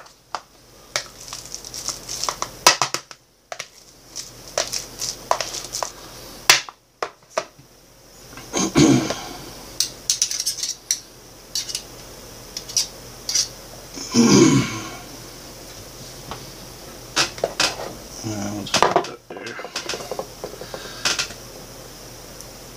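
Metal spoon and wire potato masher clinking, knocking and scraping against a small plastic tub while mashing overripe banana, in irregular runs of clicks and knocks.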